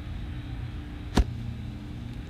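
A single sharp click a little over a second in, over a steady low background hum.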